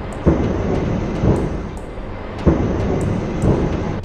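Heavy booms over a continuous deep rumble, with sharp hits about a third of a second in and again about two and a half seconds in, and softer swells between them. A faint ticking beat runs above.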